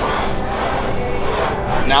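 Busy gym ambience: a steady din of background chatter and general room noise, with no distinct clank from the weight machine. A man's voice starts speaking right at the end.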